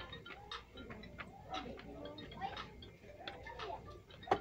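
Faint background voices with scattered, irregular sharp clicks.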